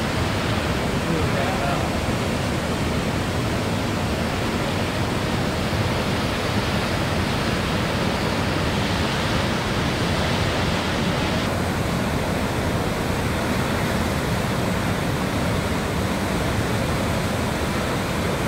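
Cumberland Falls, a large waterfall on the Cumberland River, pouring over its ledge: a steady, dense rush of falling water. Its upper hiss softens slightly about two-thirds of the way in.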